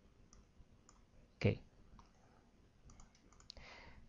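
A few faint computer mouse clicks, clustered about three seconds in, with a brief soft rustle after them.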